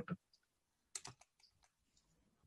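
A short run of about five faint clicks from computer keyboard keys, about a second in, against near silence on a video-call line.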